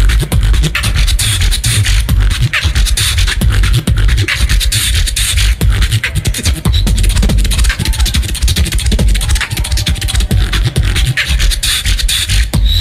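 Competition beatboxing amplified through a handheld microphone and stage sound system: a continuous fast routine of heavy deep bass with sharp snares and clicks laid over it.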